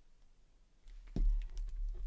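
A plastic glue bottle set down on a wooden craft table with a dull knock about a second in, after a quiet moment of light handling.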